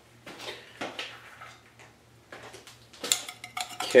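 Metal tooling being handled at a lathe: a series of light metal clinks and knocks, a few in the first second and a cluster near the end, the loudest right at the end.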